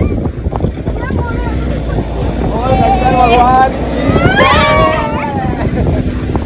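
Wind buffeting the microphone over a steady engine and road rumble, heard from the open back of a small goods truck on the move.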